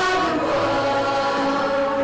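A mixed group of teenage singers singing together into microphones, holding long steady notes.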